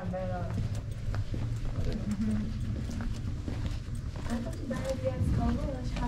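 Footsteps on a stone-paved alley, short scuffing clicks of shoes, with people talking quietly.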